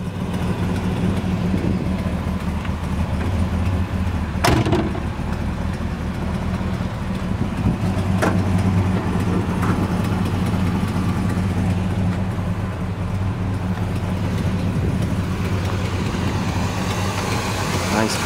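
The original 400 cubic-inch V8 of a 1968 Buick GS 400 idling steadily. A sharp click comes about four and a half seconds in.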